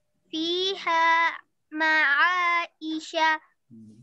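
A child's voice reciting Arabic Quranic words in drawn-out, melodic Tajweed chanting: three held phrases with short breaks between them.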